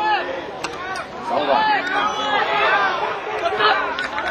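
Several people talking and calling out over one another, an overlapping babble of voices with no single clear speaker, and a couple of short clicks within the first second.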